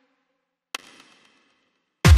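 Mostly near silence as the tail of a synth note fades out, then, about a third of the way in, one short pitched blip from a Nexus software synth lead that dies away quickly: the note previewing as it is placed in FL Studio's piano roll.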